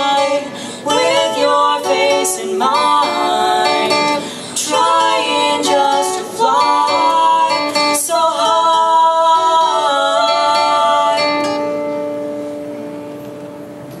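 A male and a female voice singing a duet in harmony over a strummed acoustic guitar. The song ends on a long held note that fades away over the last few seconds.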